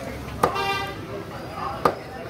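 Two chops of a heavy meat cleaver into chicken on a wooden chopping block, about a second and a half apart. Just after the first, a vehicle horn toots briefly from the street.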